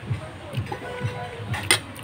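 Background music and faint voices, with one sharp click about three-quarters of the way through.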